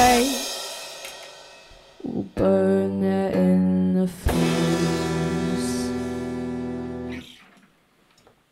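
A rock band ending a song on electric guitars and bass. The full band dies away over the first two seconds, then after a short hit the guitars and bass strike and hold two ringing final chords, and the last one is cut off about seven seconds in.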